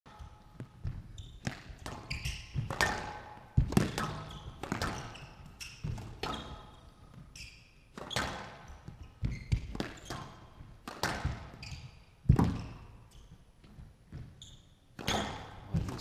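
Squash rally: the ball struck by rackets and hitting the court walls again and again, sharp echoing smacks at an uneven pace of about one to two a second, with the loudest hits about three and a half and twelve seconds in. Short high squeaks of shoes on the court floor come between the hits.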